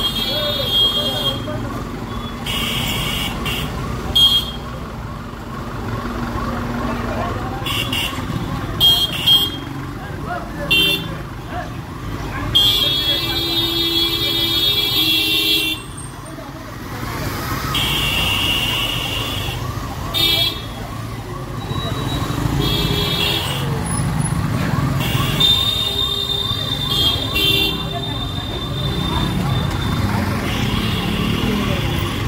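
Busy street noise with voices and repeated vehicle horns: several short honks and one horn held for about three seconds midway, the loudest sound. A faint warbling tone repeats underneath.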